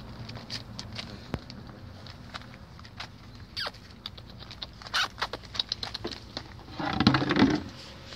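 Puppies chewing and tearing at a crusty loaf of bread, the crust crackling in many short crunches that bunch up about five seconds in. About seven seconds in comes a louder, rougher burst lasting under a second, over a steady low hum.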